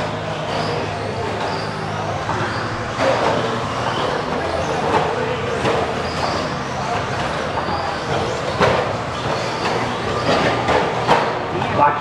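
Electric 1/10-scale RC stadium trucks racing on an indoor dirt track: a steady whir of motors and tyres in a large hall, with several sharp knocks of trucks landing or striking the track, over background voices.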